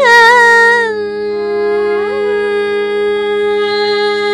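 Carnatic vocal music in raga Kharaharapriya: a woman singing with violin accompaniment over a steady drone, an ornamented bend at the start settling into one long held note. No percussion is heard.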